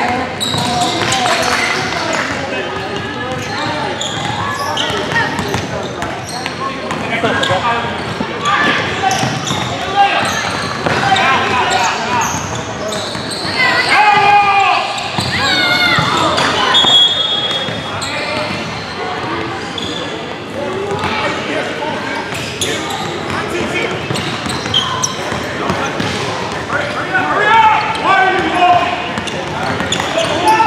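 Basketball being dribbled on a hardwood court in a large gym, under a steady mix of players' and spectators' voices talking and calling out.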